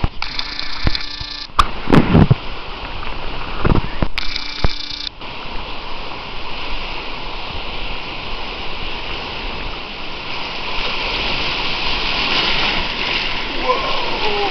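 Water splashing close to the microphone, with a few sharp knocks, during the first five seconds. Then a steady rush of river water that grows louder toward the end as a rapid nears.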